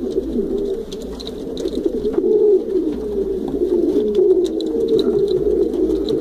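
Domestic pigeons cooing in a loft, several voices overlapping into a steady low cooing that runs without a break.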